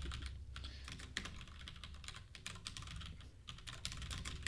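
Typing on a computer keyboard: a run of quick, irregular keystroke clicks, fairly faint, over a low steady hum.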